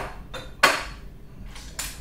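Ceramic plate and bowl being set down and shifted on a table: four sharp knocks and clinks, the loudest a little over half a second in.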